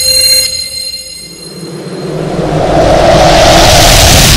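Cinematic trailer sound effects: a loud hit with high ringing tones fades away over the first second, then a rushing roar swells up over about two seconds and holds loud near the end.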